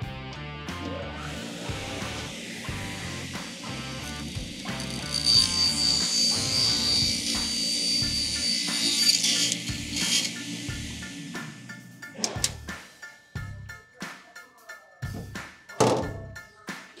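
Maksiwa SCCC circular table saw running and ripping a wooden board, the cut loudest from about five to nine seconds in, over background music with a steady beat. The music stops about twelve seconds in, and a few knocks follow.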